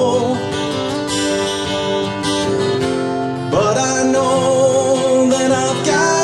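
Two acoustic guitars played together in a song, with steady held chords, and a man's singing voice coming in about halfway through.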